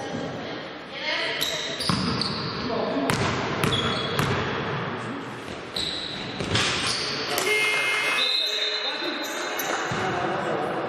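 Basketball play on an indoor court: the ball bouncing, a string of short, high sneaker squeaks on the floor, and players calling out, all echoing in the hall.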